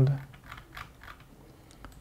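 A few faint, light clicks in the first second and another near the end, under a quiet room; a man's voice trails off at the very start.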